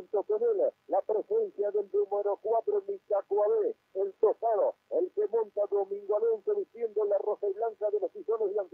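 Speech only: a race commentator talking rapidly, almost without pause.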